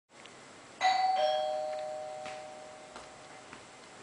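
Doorbell chime ringing 'ding-dong': a higher note about a second in, then a lower note just after, both ringing on and fading over about two seconds.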